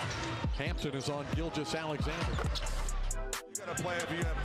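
Basketball being dribbled on a hardwood arena court, heard over a backing music track, with a brief drop in sound about three and a half seconds in.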